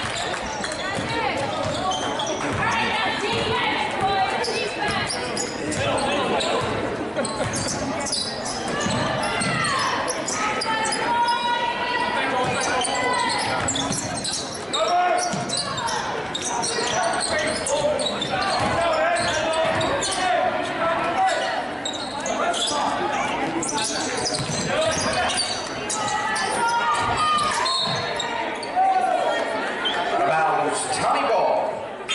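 A basketball dribbled on a hardwood gym floor, with indistinct shouting from players and spectators throughout, in a large gymnasium hall.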